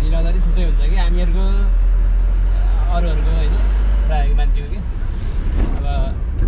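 Low rumble of a moving vehicle under people talking; the rumble drops off suddenly about four and a half seconds in.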